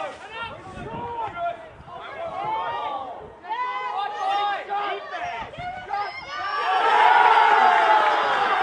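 Voices shouting at a soccer match. About six and a half seconds in, a crowd breaks into louder cheering and shouting for a goal.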